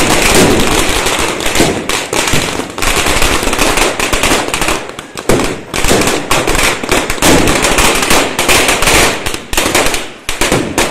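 Firecrackers going off in a dense, rapid string of sharp bangs and crackles, loud throughout, with a brief lull about five seconds in.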